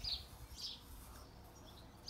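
A bird chirping: a few short, high chirps, two of them in the first second and a fainter one near the end.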